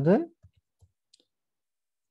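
A few faint, short computer-keyboard keystroke clicks as code is typed, following the last syllable of a man's speech.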